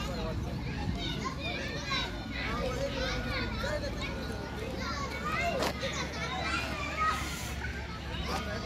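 Many children's voices calling and chattering over one another, high-pitched and overlapping.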